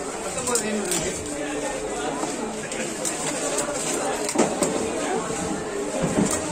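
Busy market chatter of several voices, with a few sharp knocks of a heavy curved knife cutting fish steaks on a wooden chopping block, one near the start and one about two thirds of the way in.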